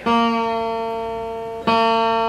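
Lowden F-22 acoustic guitar's second string, being tuned down from B to A, plucked twice about a second and a half apart. Each note rings and slowly fades at one steady pitch.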